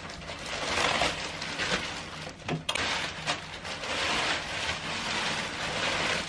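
Plastic packaging rustling and crinkling as it is pulled off a new cot mattress, in two long stretches with a short pause between them and a few sharp crackles.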